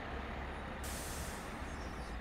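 Vehicle noise: a low, steady rumble, with a hiss of air that starts a little under a second in and cuts off about a second later.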